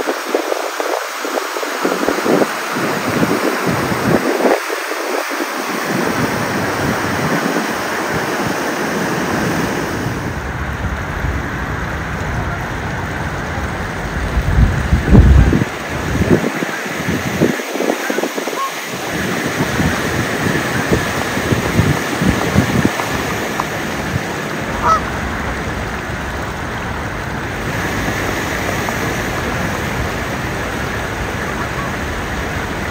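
Canada geese honking on and off over a steady rush of wind on the microphone and moving water.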